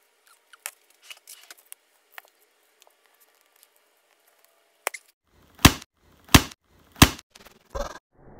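A metal spoon knocking on the seam of a cardboard tube of refrigerated cinnamon roll dough: four sharp knocks in the second half, a little over half a second apart, meant to pop the tube open. Before them there are only faint small clicks and rustles as the tube is handled.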